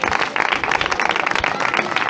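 A small crowd applauding, with many hands clapping at once.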